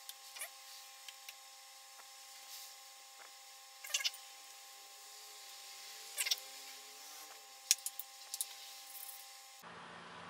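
Utility-knife blade scraping and clicking against the plastic case of a Huawei Band 4 as it cuts through the screen adhesive: a few faint, sharp scrapes and clicks, the loudest about four, six and eight seconds in, over a faint steady hum.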